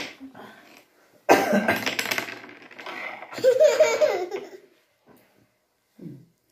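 A person laughing: a loud, breathy burst about a second in, then a higher-pitched laugh that fades out well before the end.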